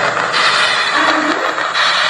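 Logo-intro sound effect: a loud, steady rushing noise with a few faint held tones under it.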